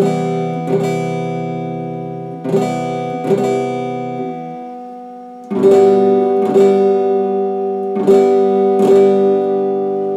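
Electric guitar strummed with a pick: one chord struck about four times and left ringing, then a different chord about halfway through, struck about five times and left to ring out.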